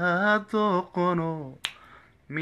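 A man singing unaccompanied in drawn-out, wavering notes, with a single sharp finger snap about one and a half seconds in.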